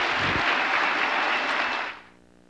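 Audience applauding, a steady wash of clapping that stops suddenly near the end.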